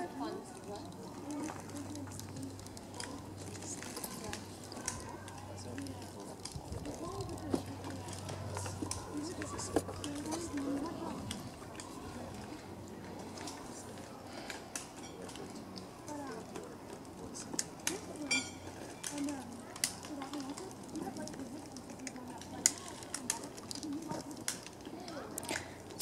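Faint, distant voices talking on and off, with scattered light clicks and a low steady hum underneath.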